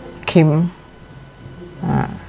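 Only speech: a woman's voice says a short word with a falling pitch about a third of a second in, then a brief "ah" near the end.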